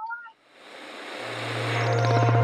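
A rising whoosh swell that opens the closing logo sting, growing steadily louder, with a steady low hum coming in about halfway through.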